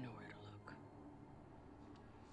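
Near silence: room tone, with a brief faint whisper-like voice just at the start.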